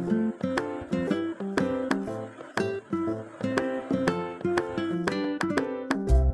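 Background music: a light tune picked on a plucked-string instrument, several notes a second.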